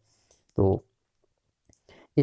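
A few faint clicks in a pause between spoken words, a couple of them close together near the end.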